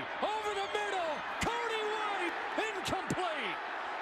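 A broadcast commentator's exclamation, "Oh!", as the quarterback is brought down, with voices running on over steady game-broadcast background noise and a few sharp clicks.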